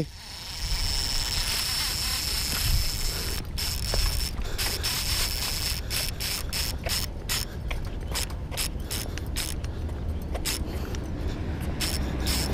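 Baitcasting reel's drag giving line to a heavy hooked fish, which the angler takes for a big stingray: a steady high whine, then rapid irregular clicks that come thicker from about three and a half seconds in.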